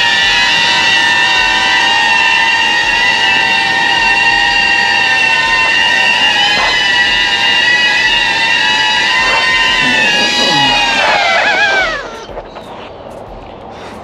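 DJI Avata cinewhoop drone's propellers and motors whining steadily at a high pitch while it flies. Near the end the whine wavers and drops in pitch as the motors spin down on landing, then stops about two seconds before the end.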